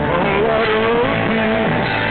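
Hard-rock music: distorted electric guitar playing notes that bend up and down, with no singing.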